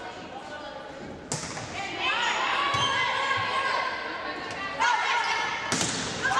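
A volleyball rally in a gym: a ball struck by hands about four times, the last and sharpest hit near the end as players go up at the net, with players and spectators calling and shouting through the second half.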